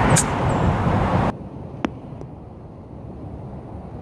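A golf club striking the ball on a short chip shot, a single sharp click just after the start over a steady outdoor background rumble. After about a second the background drops away abruptly to a quieter stretch with two small ticks.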